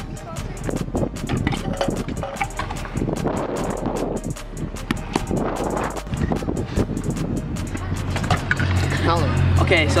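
Stunt scooter rolling over skate park concrete, with irregular clicks and knocks from the wheels and deck, mixed with background music. A voice comes in near the end.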